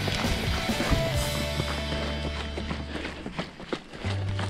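Background music with sustained bass notes and chord changes over a clopping, percussive beat.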